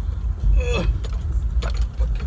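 Car cabin noise while driving: a steady low road-and-engine rumble. About half a second in a brief voice sound cuts in, and in the second half comes a quick run of light clicks and rattles.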